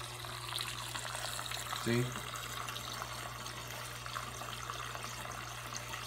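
Steady trickling and rushing of water circulating through a running saltwater reef aquarium, over a low steady hum.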